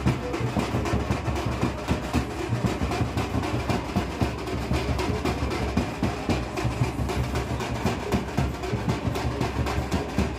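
Dhol and tasha drums played together in a fast, steady, driving rhythm, with deep dhol beats under the rapid crack of the tasha.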